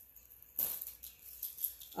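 Beaded jewelry rattling and clicking as it is handled, starting about half a second in and going on in short, irregular shakes.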